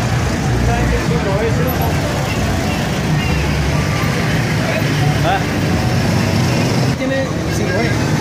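Busy street traffic: motorcycle and car engines running and passing close by in a steady stream, with people's voices mixed in.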